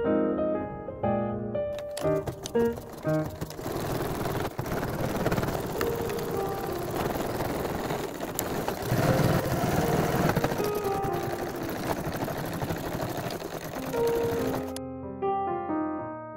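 NCC domestic sewing machine stitching a seam through heavy canvas, running steadily for about eleven seconds and stopping abruptly near the end. Soft piano music plays at the start and end.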